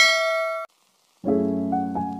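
A bright bell-like ding from the subscribe-button animation, ringing and then cutting off suddenly about two-thirds of a second in. After a short silence, soft piano chords of background music begin.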